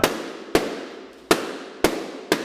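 Balloons bursting one after another as a 40-watt blue laser beam hits them: four sharp pops about half a second apart, each trailing off in a short echo.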